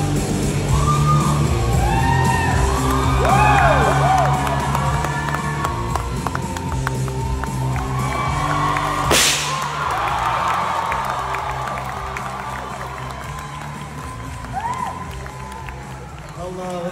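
Stage band music with a steady bass line under a crowd cheering and whooping. A sudden short blast cuts through about nine seconds in, and the music and cheering fade toward the end.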